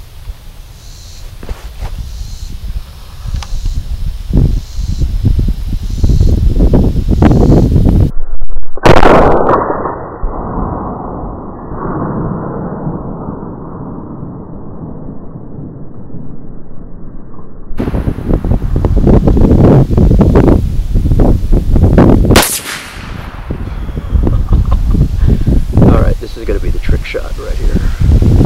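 Two shots from a .50 Krater AR-10–style rifle firing 300-grain Hornady FTX bullets, each a sharp crack, about nine seconds in and about twenty-two seconds in. After the first shot a long muffled rumble follows, and low gusty rumbling fills the rest.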